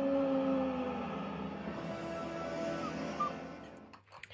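Film score music playing from a television: a long held note that slides slightly down and fades about a second in, followed by quieter music dying away toward the end.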